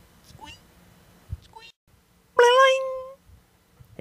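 A single short pitched call, like a cat's meow, about two and a half seconds in: it rises quickly at the start and is then held nearly level for most of a second. A few faint clicks come before it.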